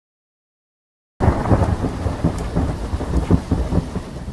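Thunder rumbling with rain, cutting in suddenly about a second in after dead silence: a deep rumble with crackles over it.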